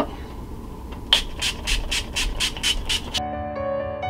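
A pump bottle of makeup setting spray spritzed about ten times in quick succession, short even hisses about five a second, starting about a second in. Just after three seconds in, soft keyboard music with sustained notes begins.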